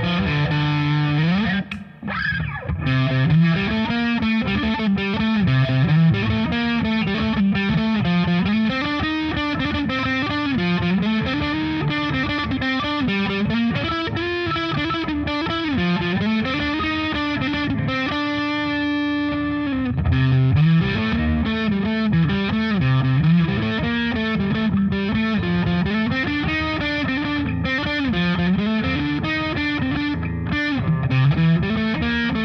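Electric guitar played through a Pogolab overdrive pedal, gain, level and tone at noon in the flat position, into a Marshall amp: overdriven riffs and lead lines with notes bent up and down. The playing stops briefly about two seconds in, and a chord is left ringing for about two seconds around two-thirds of the way through.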